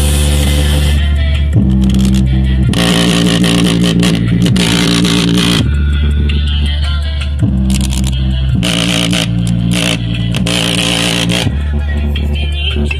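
JBL Flip 4 portable Bluetooth speaker playing bass-heavy music at full volume, its passive radiator pumping hard. Long held bass notes change pitch every second or two.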